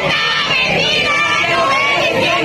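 A protest crowd shouting, many voices loud and overlapping at once.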